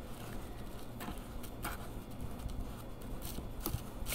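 A metal spoon stirring baking soda into thick cream in a small bowl: soft scraping with a few light clicks of the spoon against the bowl.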